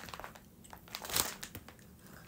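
Shipping packaging being handled and opened, crinkling in irregular crackles, loudest a little past halfway.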